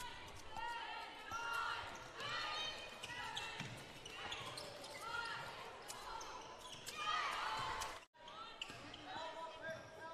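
Game sound from an indoor basketball court: basketball shoes squeaking on the hardwood floor in many short chirps, with a ball bouncing and players' voices, echoing in a large hall. The sound breaks off briefly about eight seconds in, then the same kind of court noise resumes.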